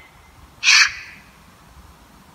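A single short, harsh, scratchy burst just over half a second in, lasting about a third of a second, from a phone running a spirit-box app that sweeps through fragments of sound, played through the phone's small speaker.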